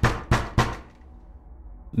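Knocking on a door: three quick knocks in the first second, about three a second.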